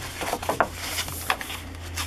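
Sheets of a scrapbook paper pad being turned and handled: several short paper rustles and flaps, mostly in the first second and a half, over a low steady hum.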